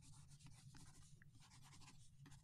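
Near silence: faint room tone with a low hum and a few faint, soft ticks.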